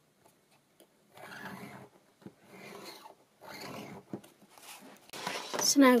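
Embossing stylus drawn along a steel ruler over cardstock, making several short scraping strokes, each under a second long, as it scores fold lines into the card.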